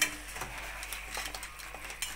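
Crab masala cooking in a steel kadai: a low, steady sizzle with a sharp click of a spoon against the pan at the start and a few faint taps after.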